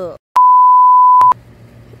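A single steady, pure electronic beep lasting about a second, with a click where it starts and another where it stops: a censor bleep edited in over a flubbed line.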